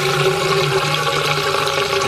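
Water draining out of an emptying fish tank down its PVC bottom drain pipe: a steady rushing flush carrying settled debris and algae out of the tank, with a low steady hum underneath.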